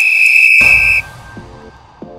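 A single loud, steady whistle blast about a second long, signalling that the countdown timer has run out. About halfway through it a low boom sets in, and music follows.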